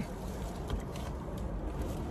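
Steady low hum inside a car's cabin.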